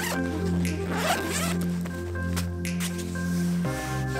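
A camera backpack's zipper is pulled open in two runs of strokes, over background music of sustained chords that change near the end.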